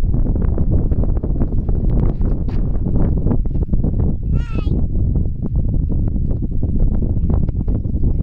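Steady low rumble with crackling, typical of wind buffeting a phone's microphone on open ground. About four and a half seconds in comes one brief, wavering high-pitched call.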